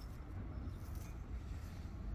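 Faint, steady low rumble of outdoor background noise, with no distinct sounds in it.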